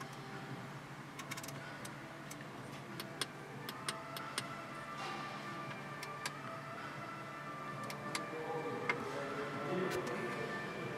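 Scattered light clicks from the Audi RS7's MMI control knob and buttons as the infotainment menus are stepped through, falling in two groups a few seconds apart. Faint background music plays under them.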